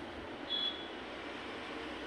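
Steady background room noise with one short, high-pitched electronic beep about half a second in.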